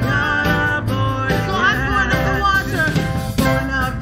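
Live gospel worship song: a woman sings the lead into a microphone over band accompaniment with keyboard.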